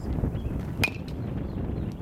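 A silver baseball bat hitting a pitched ball once, a little under a second in: a sharp crack with a brief ringing ping. Wind rumbles on the microphone throughout.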